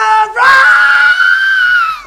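A woman's loud, high-pitched excited cry, half sung: a short note, then one long held note that begins to slide down at the very end.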